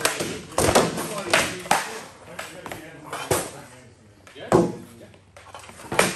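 Practice weapons striking a round shield and armour during armoured sparring: a string of about seven sharp, irregular hits, some in quick pairs, ringing in a hall.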